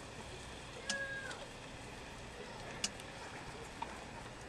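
A red fox gives one short, high whine about a second in, with a few sharp clicks later on.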